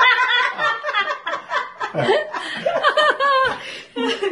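A woman laughing in repeated bursts.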